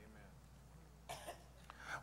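Faint room tone with a steady low hum, broken about a second in by one short cough-like sound from a person.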